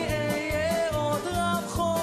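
Live band music: a man sings the lead melody into a microphone over grand piano, guitars, bass and drums, with a steady drum beat.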